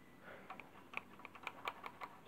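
Faint, irregular light clicks and taps of a hand handling a small engine's plastic and metal parts around the flywheel screen, about eight in two seconds.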